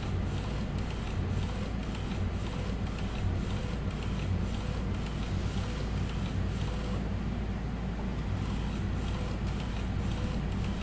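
Epson L805 inkjet printer working through an ID-card print on its card tray: a steady mechanical whir with a low hum and faint, evenly repeated ticks.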